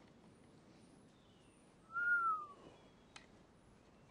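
A single short whistle about two seconds in, rising slightly and then falling in pitch, over faint woodland background, with one faint click a second later.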